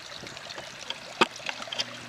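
Steady background hiss with a faint low hum, broken by a few light clicks, the sharpest a little over a second in.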